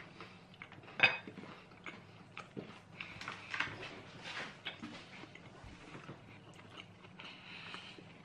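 People chewing white chocolate Twix fingers, with scattered small crunches and mouth clicks and one sharper click about a second in.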